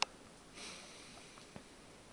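A short sniff, a quick breath in through the nose, about half a second in, after a sharp click at the start.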